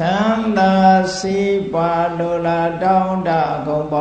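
A single male voice chanting Pali verses in the Theravada Buddhist style. He holds long steady notes and steps from one pitch to the next, with a brief rising glide at the start.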